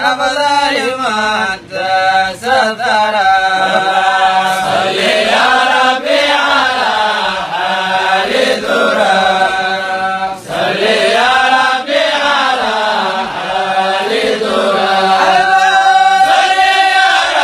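A man's solo voice chanting unaccompanied into a microphone. The melodic lines hold long notes that rise and fall, broken by short pauses for breath.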